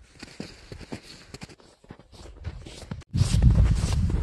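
Footsteps in snow, faint at first. About three seconds in the sound jumps to a loud low rumble with steps close to the microphone.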